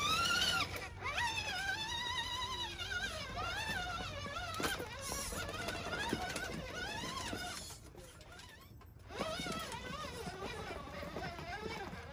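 Custom six-wheel RC tow truck's electric motor and gears whining as it crawls, the pitch rising and falling with the throttle. The whine stops for about a second around eight seconds in, then starts again as the truck climbs a ramp.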